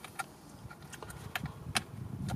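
Plastic electrical connector and wiring being handled at an accelerator pedal: faint rustling with a few small clicks, the sharpest about three-quarters of the way through.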